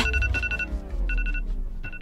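Smartphone alarm going off: short, steady electronic beeps, four in a row with uneven gaps.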